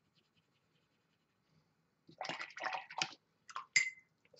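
Paintbrush swished and stirred in a glass jar of rinse water for about a second, starting about halfway in, followed near the end by a few short taps, one with a brief ring like the brush knocking on the glass.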